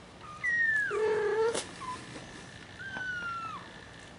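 A cat meowing: a high call that slides down in pitch, running into a lower, louder mew, then a single sharp click and a second high, slightly falling call near the end.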